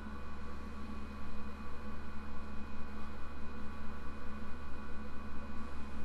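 Steady electrical hum with background hiss, several unchanging tones and no speech.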